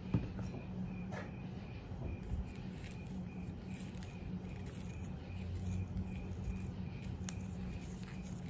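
Faint handling sounds of a corncob pipe being refilled with tobacco: a few light clicks and small rustles, spaced out by a second or more, over a steady faint hum.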